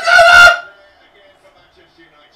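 A man's high, strained exclaiming voice that trails off about half a second in, followed by quiet room tone.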